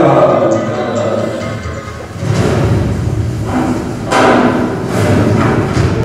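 Music with deep thuds and several loud swells, about two, four and five seconds in.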